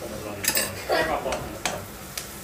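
Wok and kitchen utensils clattering: four or five sharp knocks and clinks spread through two seconds as the pan of frying onions is handled.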